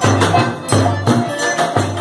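Live music from a piano accordion and a tambourine, with a steady beat of low thumps about twice a second and a constant jingle.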